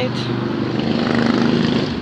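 A steady engine drone with a low pitched hum, swelling slightly to its loudest about a second and a half in.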